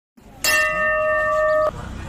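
A bell struck once, ringing with a clear steady tone for just over a second before cutting off abruptly.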